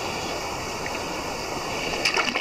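Shallow creek water running steadily.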